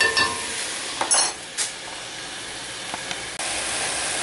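Sliced meat, carrot and onion sizzling in oil in a roasting pan while a metal spoon stirs them, with two short scrapes or clinks of the spoon against the pan about a second in. The mixture is stewing in its own juice.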